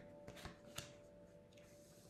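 Near silence with a few faint, soft taps of oracle cards being handled and laid down on a cloth-covered table, the clearest just under a second in, over faint steady background music.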